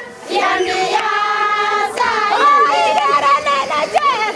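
A group of high-pitched voices singing a melody together, with wavering runs on the notes; the singing breaks off briefly at the very start, then carries on.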